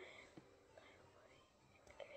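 Near silence, with a boy faintly whispering to himself in the first second.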